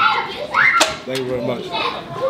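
Background chatter of voices, including a child's high voice rising in pitch, with one short sharp click near the middle.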